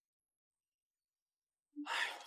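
Silence, then near the end a man's short, breathy exclamation, 'ai', like a sigh of exasperation.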